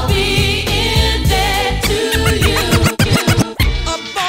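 A DJ mix playing loud, a sung vocal over a beat, then record scratching on a Rane One turntable controller in the second half: a run of quick back-and-forth sweeps in pitch.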